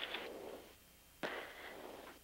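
A short burst of hiss on the crew's intercom audio. It starts suddenly about a second in and fades away, after a fainter fading hiss at the start.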